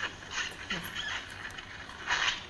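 Faint, indistinct speech and hissy room noise, heard over a video-conference audio link.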